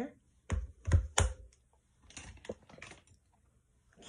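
Three sharp plastic-sounding clicks and knocks in the first second and a half, then a few softer clicks, as small makeup items are capped, set down and picked up on a table.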